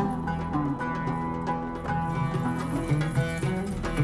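Oud played with plucked notes in a quick melodic line.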